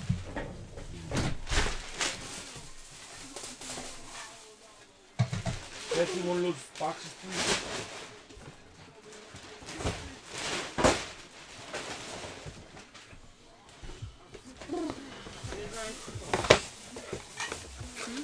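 Faint, muffled voices in a small room, with scattered clicks and rustles.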